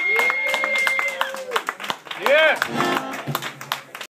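A small audience clapping and calling out after a song, with a held high tone through the first second or so.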